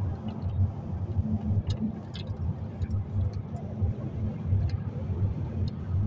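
Steady low road rumble of a moving car heard from inside the cabin: engine and tyre noise at highway speed, with a few light clicks about two seconds in.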